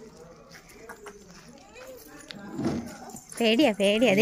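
Faint footsteps of sandals on a dirt path with a few soft clicks, then a person's voice starting loudly near the end.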